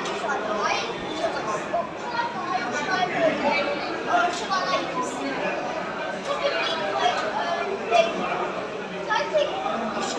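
Indistinct chatter of several voices talking over one another.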